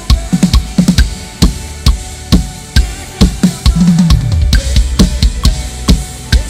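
Acoustic drum kit played live and heard up close: bass drum and snare keep an even beat of about two hits a second, with cymbals, and a busier run of hits about four seconds in.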